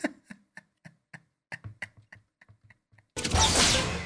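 Cartoon sound effects from the anime's soundtrack: a run of soft, irregular ticks for about three seconds, then a loud rushing noise for most of the last second.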